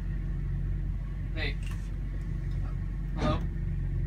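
Steady low rumble of a running vehicle, heard from inside the back among the cargo.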